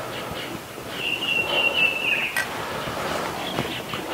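A bird call outdoors: one high, steady whistled note about a second in, lasting just over a second, over a faint background hiss.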